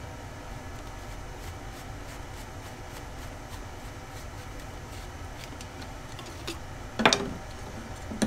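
Quiet workshop room tone with a few faint ticks, then a single short knock or clatter about seven seconds in.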